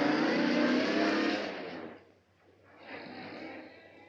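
A 1940s school bus's engine running as the bus pulls away, its note steady and then dying away quickly about one and a half seconds in. A fainter, shorter sound follows a second or so later.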